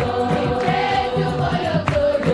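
A congregation singing a hymn together in chorus, with hand-clapping and a steady rhythmic beat underneath.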